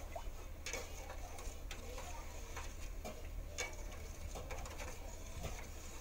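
A spoon stirring green agar jelly mixture in a stainless steel pot, with irregular light clicks and scrapes against the pot, one or two a second. A steady low hum lies underneath.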